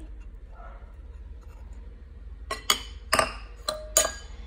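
Metal wire whisk clinking against a glass mixing bowl: a quiet stretch, then about five sharp, ringing clinks close together in the last second and a half.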